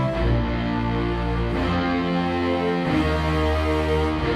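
Sampled heavy-metal power-chord guitars from the Iron Guitars library playing back together with sampled orchestral strings. The sustained chords have a heavy low end and change about every one and a half seconds.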